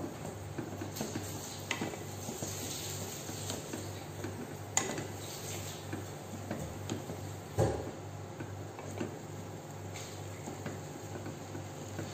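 Wooden spatula stirring and tossing instant noodles in a pot, with scattered light scrapes and knocks against the pot's sides and two sharper knocks around five and seven and a half seconds in, over a steady low hum.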